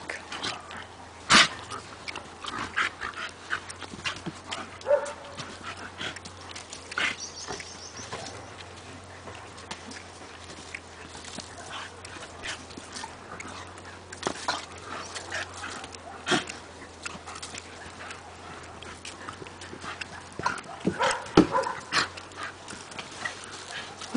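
A German Shepherd and a Staffordshire Bull Terrier play-wrestling in a sand pit: irregular scuffling, thumps and scrapes in the sand, with a few short dog sounds. The activity is busiest near the end.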